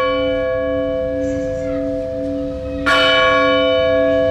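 A large bell ringing out with a steady tone, struck again about three seconds in, each stroke ringing on.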